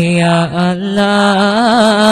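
A solo voice singing an Islamic devotional song, drawing out the word "Ya" on a long held note that breaks into wavering melodic ornaments in the second half.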